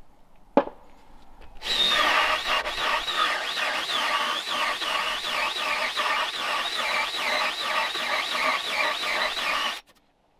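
Cordless drill driving a hole saw into a wooden plank: a loud grinding cut with a squeal that wavers up and down about two or three times a second, stopping suddenly near the end. A single sharp knock about half a second in.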